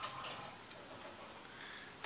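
Low room noise with a few faint ticks in the first second, as from light handling.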